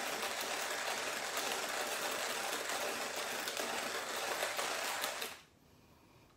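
Hand-cranked coffee mill grinding medium-roast coffee beans at a coarse setting: a steady gritty crunching as the handle turns, stopping about five seconds in.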